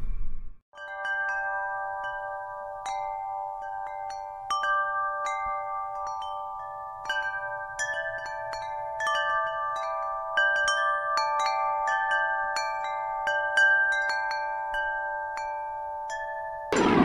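Chimes ringing: irregular strikes of several bell-like tones that start just under a second in, each ringing on so that they overlap.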